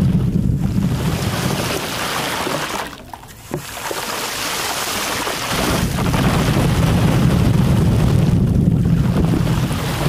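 Water sprayed as a fine mist from a handheld sprayer straight onto a microphone's grille, giving a steady rushing hiss with a deep buffeting rumble where the spray strikes the mic. The spray eases off briefly about three seconds in, and the rumble is gone until about halfway through, when it comes back.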